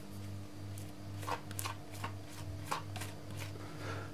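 A few light scrapes and clicks of a spatula and fingers against a mixing bowl as cake batter is poured and scraped into a ring tin, over a steady low hum.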